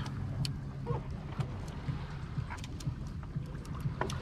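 Wind rumbling unevenly on the microphone, with a few scattered faint clicks and taps.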